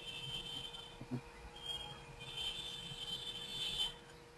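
Faint background noise: a steady low hum with a hiss that swells over the second half, and a brief soft knock about a second in.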